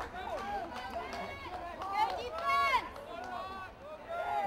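Several people shouting and calling out at once, with no clear words, and one loud shout about two and a half seconds in.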